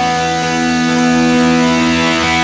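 Instrumental passage of a rock song: guitars playing long, held notes over a full band mix.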